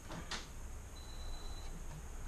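Faint handling noise of hands fitting a wire connector onto a circuit board, with one soft click about a third of a second in. A faint thin high tone sounds briefly in the second half.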